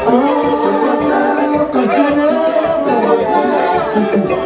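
Male voices singing unaccompanied into microphones, several voices holding long notes together.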